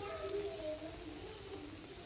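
A faint voice, wavering in pitch for about the first second, over low room noise; no other distinct sound.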